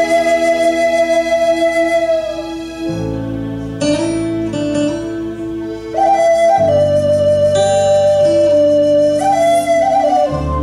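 Wooden duct flute playing a slow melody of long held notes with small bends, over a backing track of sustained bass and chords that change about three seconds in and again midway through.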